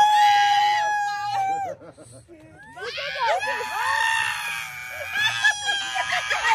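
Excited high-pitched screaming: one long held scream for about the first two seconds, then several voices screaming and cheering together from about three seconds in.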